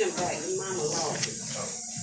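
Soft speech over a steady hiss.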